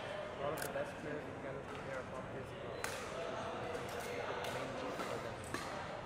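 Badminton rally in a large sports hall: several sharp racket strikes on the shuttlecock a couple of seconds apart, over faint background voices and hall echo.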